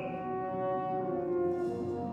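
Opera orchestra playing slow sustained chords with brass prominent. The held notes shift gradually, with no singing.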